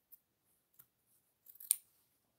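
Duckbill appliqué scissors snipping through thread and fabric layers at a seam. There are a couple of light snips, then a quick run of snips near the end, the last one the sharpest.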